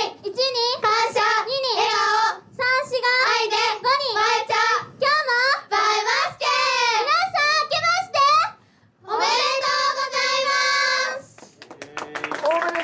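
High-pitched young female voices shouting a rhythmic pre-show pep chant (kiai) in short bursts, ending in one long held cry near the end.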